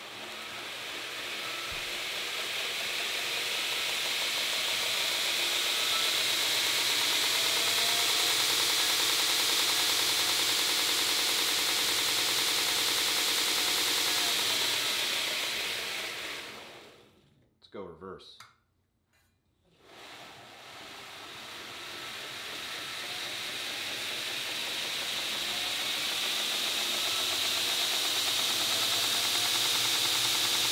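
2x72 belt grinder with an abrasive belt, driven by a 2 HP motor on a variable-frequency drive, running with no load: a steady hissing run with a faint rising whine as the drive ramps the motor up. About halfway through it winds down to a stop, and after a few seconds of near silence it ramps back up to speed.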